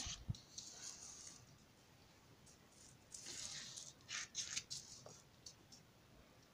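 Faint rustling and sliding of a sheet of drawing paper being handled, with a light click near the start, a longer rustle about three seconds in and a few quick scrapes just after.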